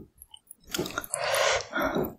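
Close-miked chewing of cold noodles in broth with beef and young radish kimchi: after a brief quiet moment, wet chewing starts less than a second in and runs on loudly.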